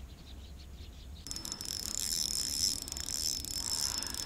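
Spinning reel being cranked, a steady high-pitched whir with fine rapid ticking that starts about a second in, as a spinner lure is retrieved.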